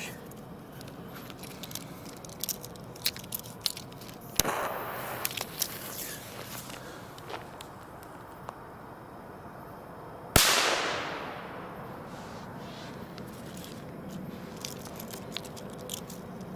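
A Keller Pyro Cracker firecracker: a short hiss as its fuse catches about four seconds in, then a single sharp, loud bang about ten seconds in with a long echoing tail that dies away over a couple of seconds.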